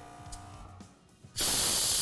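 Camper trailer's airbag suspension venting air as one side is lowered: a sudden loud, steady hiss that starts about one and a half seconds in.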